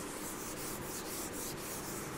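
Chalkboard duster rubbing across the board, a faint steady scrubbing as chalk is wiped off.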